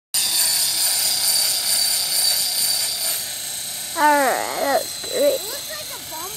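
Electric Belt CP radio-controlled helicopter in flight, its motor and rotor giving a steady high-pitched whine. A person's voice comes in briefly about four seconds in.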